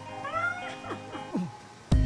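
A baby's short squealing call that rises and falls, followed by a few quick downward-sliding vocal sounds, over soft guitar background music. The sound gets suddenly much louder just before the end.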